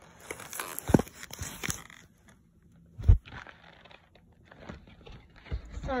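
Small paperboard box being torn open by hand: ripping and crinkling for about two seconds, with a thump about a second in and another just after three seconds, then quieter rustling as it is handled.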